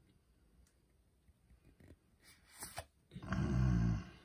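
A few faint clicks of trading cards being handled, then a low, steady hum or groan from a person's voice in the last second.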